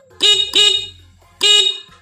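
Motorcycle horn, newly wired through a relay, sounding loud beeps: a quick double beep, then a single beep about a second later. It shows that the horn circuit works.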